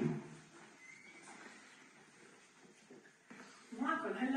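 A thump as a frosted glass door with a metal handle is pushed open, followed by faint room noise and a brief thin squeak about a second in. A voice starts just before the end.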